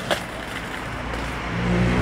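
A car approaching along the street over steady traffic noise, its engine hum building from about halfway through.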